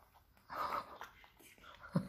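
A soft, whispered voice, with a few faint crisp clicks of raw cauliflower being broken apart by hand.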